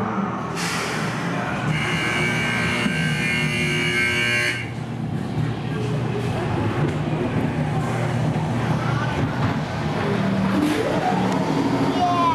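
Dark amusement-ride audio: a steady low rumble from the ride, with a high held tone from about two to four and a half seconds in, and a voice near the end.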